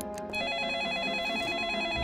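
Telephone ringing with a rapid electronic warbling trill: one ring, starting about a third of a second in, signalling an incoming call.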